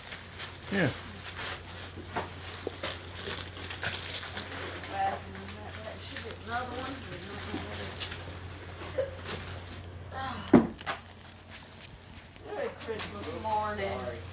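Wrapping paper on a gift crinkling and rustling in short crackles as a baby grabs and tugs at it, with a few short voice sounds in between and one sharp knock about ten and a half seconds in.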